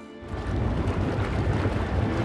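A noisy rumble, heaviest in the low end, starts suddenly about a quarter second in and grows gradually louder, alongside music.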